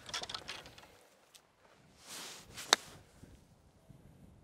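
A golf iron striking the ball once on an approach shot: a single sharp click about two-thirds of the way through, just after a soft rush of the swing.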